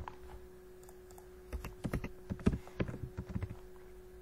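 Typing on a computer keyboard: a quick run of about eight keystrokes, starting about a second and a half in, as a short word is typed. A faint steady hum runs underneath.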